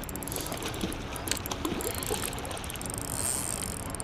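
Spinning reel clicking rapidly as a brown trout is played on the line.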